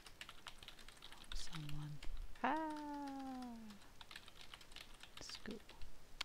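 Typing on a computer keyboard: a run of quick key clicks. About two and a half seconds in, a drawn-out vocal sound rises sharply at its start, then falls slowly in pitch for over a second. It is preceded by a brief low vocal sound.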